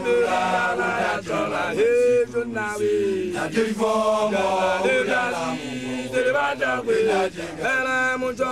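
A young Basotho initiate (lekoloane) chanting an initiation song in a strong voice, in long phrases that slide up and down in pitch.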